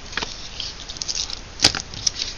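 Paper being handled on a wooden craft table: light rustling with a few small clicks, and one sharp tap a little before the end.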